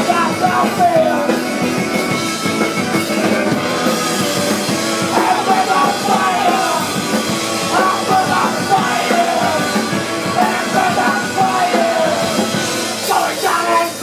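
Live garage punk band playing loud: electric guitars and a drum kit, with the lead singer's voice on top.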